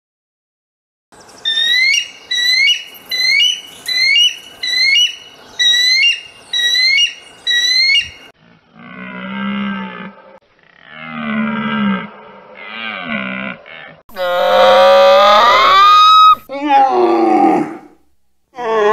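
A run of animal calls. An eagle screams high and sharp, about ten times over the first half. A deer then calls three times, lower, and two loud, long calls come near the end, the first rising in pitch, from a camel.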